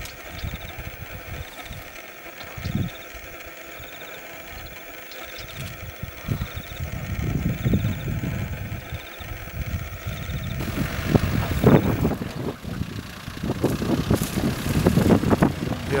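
Engine of an open game-drive Land Rover running as it drives through bush. About ten seconds in the sound turns louder and rougher as the vehicle gets stuck in sand.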